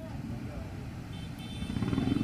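Outdoor street background from a live field feed: a low, steady motor-vehicle engine noise that grows louder near the end.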